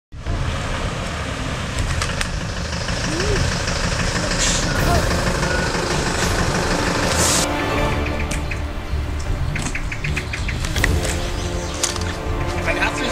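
MAN fire engine's diesel engine running with a steady low rumble as the truck drives slowly closer.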